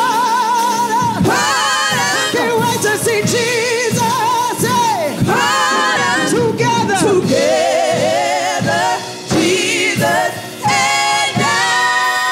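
Gospel singing by a small group of women's voices at microphones, over a live band with drums, with long held notes that waver in vibrato.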